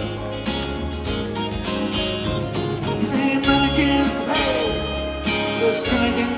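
Live band playing an instrumental passage between sung lines, with guitars and bass.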